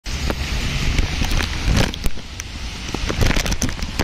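Rain falling on a wet paved path, with many small sharp drop hits and a low rumble of wind on the microphone.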